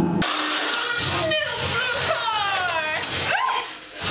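Toy radio-controlled cars' small electric motors whining as they drive, the pitch sliding down and up as they slow and speed up.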